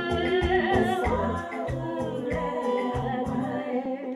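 Live gospel music: a woman singing into a microphone over a band, with a regular low beat under held chords. The beat drops out about three and a half seconds in while the voice and chords hold on.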